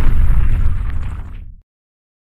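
Cinematic explosion-like rumble sound effect from a logo intro, loud and deep, fading out and ending in dead silence about one and a half seconds in.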